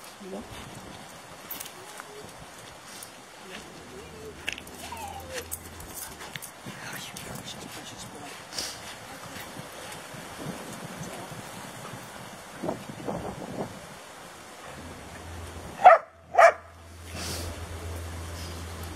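A dog barking twice in quick succession near the end, over a quiet outdoor background.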